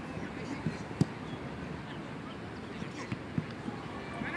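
Open-air sound of a football match: a steady background hiss with faint, distant shouting from players, and a single sharp thump about a second in, with a couple of smaller knocks near the end.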